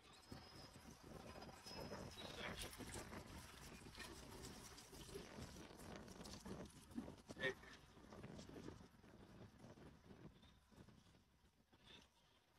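Near silence: faint ambient noise with soft scattered sounds, and one brief louder sound about seven and a half seconds in.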